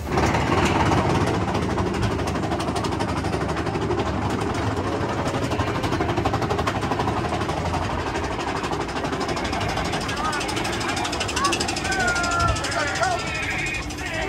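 Mine-train roller coaster running along its track: a steady rumble and rattle. Riders' voices and squeals come in over the last few seconds.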